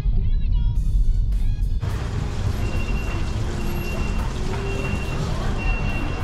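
Low road rumble inside a moving car. About two seconds in it gives way abruptly to busy street noise, with a short high electronic beep repeating about once a second.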